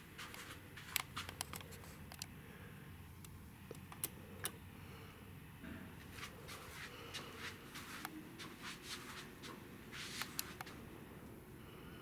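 Quiet indoor room tone with a low steady hum and scattered light clicks and taps, the sharpest about one second and about four seconds in.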